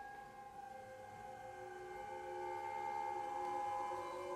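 Contemporary music for violin and electronics: a long held high tone grows louder through the second half over several quieter steady tones, with no beat or rhythm.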